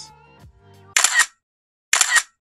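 Faint tail of background music, then two short, loud swishes of noise about a second apart: sound effects for the animated title card.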